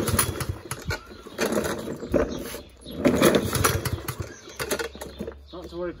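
Mountfield petrol lawn mower being pull-started: about three rasping pulls of the recoil cord roughly a second and a half apart, the engine turning over without catching. A voice near the end.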